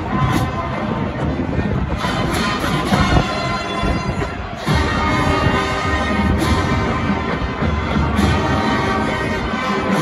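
High school marching band playing held chords, with accented full-band hits. It eases off briefly about four seconds in, then comes back in loud.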